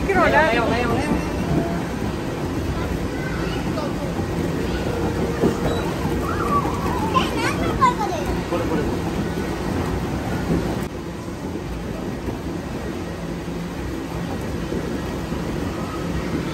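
Children's high voices calling out over a steady rushing din of an indoor play area, once at the start and again around seven seconds in. The background din drops slightly about eleven seconds in.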